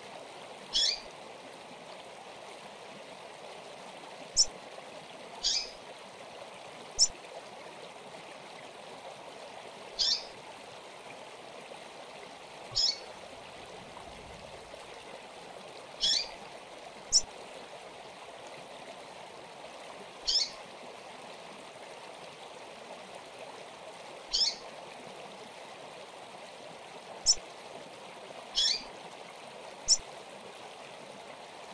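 Double-collared seedeater (coleiro) giving short, sharp, high call notes that fall in pitch, one every two to four seconds, over a steady rushing background hiss.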